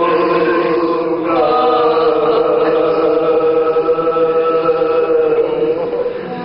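Male voice reciting an Urdu marsiya (Shia elegy) in the melodic soz style, holding long steady notes with a short break about a second in.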